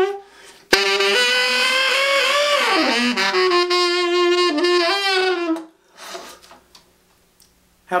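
Tenor saxophone playing a short, dirty growled phrase in the middle register. It opens with a sharp attack about a second in, swoops down in pitch and back, then holds a note before stopping a little over halfway through.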